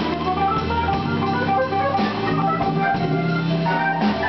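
Live blues band playing an instrumental passage with no singing: an organ-sounding keyboard, electric guitar and drum kit, with quick runs of short notes over held lower notes.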